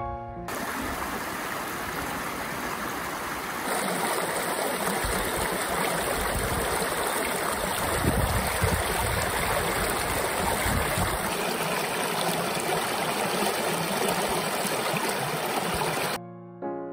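Creek water rushing and splashing over rocks, a steady noise of flowing water that grows louder about four seconds in. Piano music ends just as the water sound begins.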